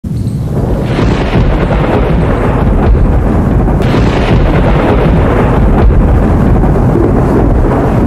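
Loud cinematic thunder sound effect: a continuous heavy rumble with several hard hits through it.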